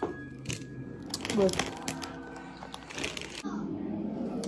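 Instant ramen packets being handled: plastic packaging crinkling and dry noodle blocks cracking, in scattered clicks and crackles with busier stretches about a second in and near the three-second mark.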